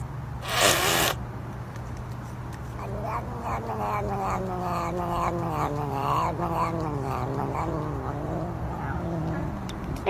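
A long-haired cat gives a long, wavering, low yowl that pulses several times a second and slowly drops in pitch. A short hissing burst comes about half a second in.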